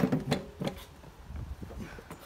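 Footsteps and knocks on a ladder being climbed: three sharp knocks within the first second, then quieter shuffling.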